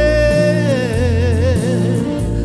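A man singing a slow gospel song over a recorded backing track, holding one long note that turns into a wide vibrato partway through, with bass notes and a steady beat underneath.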